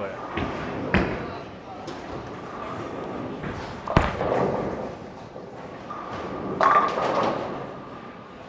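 A Storm Night Road bowling ball is released and lands on the lane with a sharp thud about halfway through, then rolls down the lane. Near the end the pins crash.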